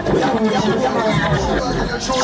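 Voices talking and chattering, with little or no music under them.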